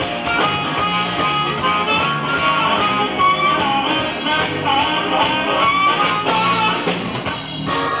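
Live blues band playing, with electric guitar to the fore in bent, sliding notes over a repeating bass line and drums.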